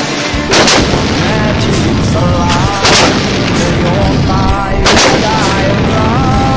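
Towed field howitzer firing three sharp shots about two seconds apart, each blast trailing off into a lingering rumble.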